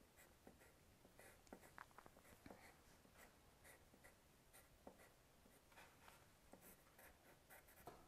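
Faint scratching of a wooden graphite pencil on paper, in many short separate strokes as small lines are drawn.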